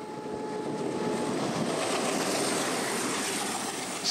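Passenger train running past, its rumble and rattle swelling in over the first second and then holding steady.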